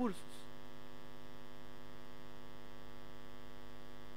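Steady electrical mains hum in the audio chain: a constant buzz made of many even tones that does not change.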